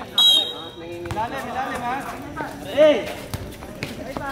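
A referee's whistle gives one short, shrill blast right at the start, then players' voices call out on the court, with one loud shout about three seconds in and a basketball bouncing a few times.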